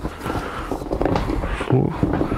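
Stiff waterproof fabric of a large roll-top dry bag rustling and crackling as it is pulled and spread open by hand.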